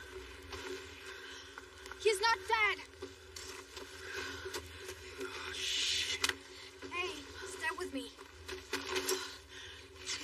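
Short wordless human cries and grunts in a struggle, in two bursts, over a steady low drone.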